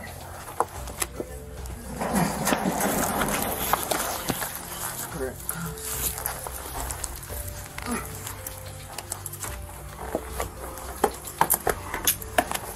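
Physical struggle heard through a body-worn camera: rustling and knocks of bodies and clothing against the camera, and a woman's wordless screaming, loudest from about two seconds in. A steady background music track runs underneath.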